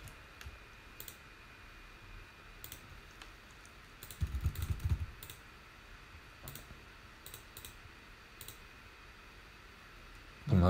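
Scattered single clicks of a computer mouse and keyboard, about a dozen, sharp and spread out, over faint room hum. About four seconds in there is a brief low rumbling thump lasting under a second.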